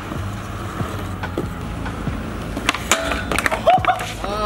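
Skateboard wheels rolling steadily on concrete, then a cluster of sharp clacks and knocks near the end as a trick is bailed and the board and rider hit the ground.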